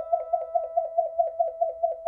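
Electronic warbling tone sound effect: one steady pitch that wobbles in quick regular pulses, about six a second, and stops abruptly.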